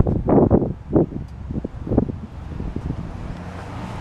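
Wind buffeting the camera microphone outdoors, with a few gusts in the first two seconds over a low steady rumble.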